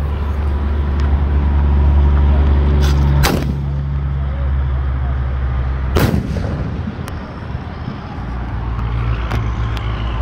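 4-inch 'Dog Stop Barking' aerial firework shell: a sharp report about three seconds in, then a louder one about three seconds later as the shell bursts, each ringing out briefly. A steady low engine-like hum runs underneath.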